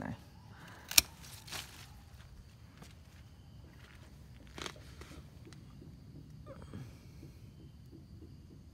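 A single sharp snip of hand pruning shears cutting back an overgrown shoot on a fig tree, about a second in, followed by a couple of fainter clicks.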